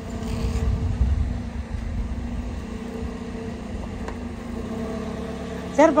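Car engine idling with a steady low hum; a low rumble is stronger in the first couple of seconds.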